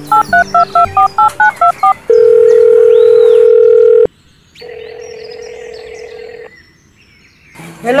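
A phone call being placed: about ten quick touch-tone keypad beeps as the number is dialled, then the ringing tone of the call going through. The ringing tone is loud for about two seconds and, after a short break, quieter for about two more.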